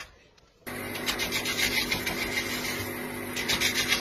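Rubbing and scraping as white rope lacing for a dhol is handled, over a steady hum; the sound starts abruptly about half a second in.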